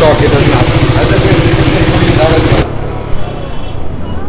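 KTM Duke 390's single-cylinder engine idling with a steady, even pulse, running with the newly fitted Race Dynamics Powertronic ECU. About two and a half seconds in the sound cuts abruptly to a quieter engine and road noise while riding.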